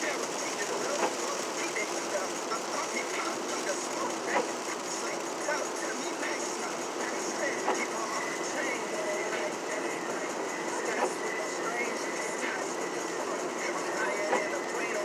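Steady road noise inside a car's cabin, with faint voices underneath and a few light ticks.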